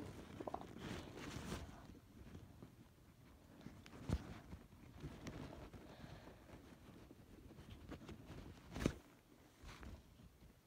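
Faint rustling and handling noise as a toy doll's cast is re-tightened by hand, with two short knocks, one about four seconds in and a louder one near the end.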